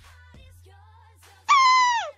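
Faint background music, then about one and a half seconds in a loud, high-pitched, voice-like cry that slides downward in pitch for about half a second.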